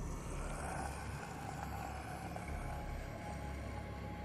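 A low, steady rumble under a hissing swell that rises and then fades over a few seconds, dark ambient sound design in a horror soundtrack.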